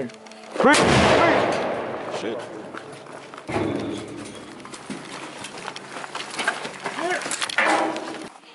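Explosive breaching charge detonating on a steel door: a sharp blast under a second in, fading over about two seconds, then a second, weaker thump about three and a half seconds in.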